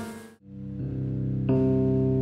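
Keyboard music of sustained chords over a low bass note. It fades out abruptly just under half a second in, comes back with a new chord, and changes chord again about a second and a half in.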